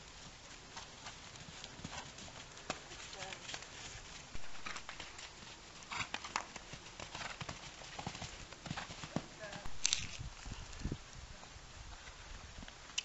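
Hoofbeats of a ridden pony moving around a wet sand arena: soft, irregular thuds.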